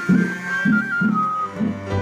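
Background music: a held, whistle-like melody that steps between a few notes over a steady run of low plucked string notes.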